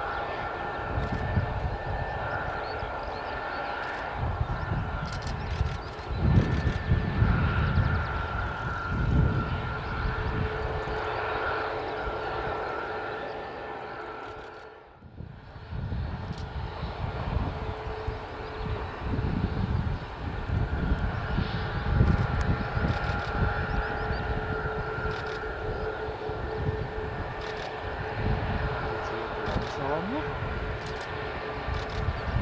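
Airbus A320neo-family jet taxiing, its turbofans running at low power with a steady whine of several held tones over an irregular low rumble. The sound fades out and back in about halfway through.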